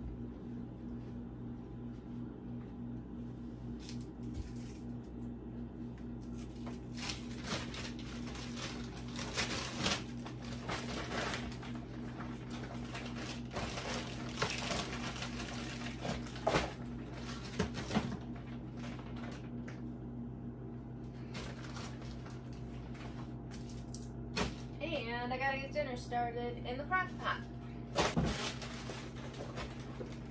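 Plastic grocery bags rustling and crinkling in irregular bursts as groceries are unpacked by hand, over a steady low hum. A short wavering voice-like sound comes in near the end.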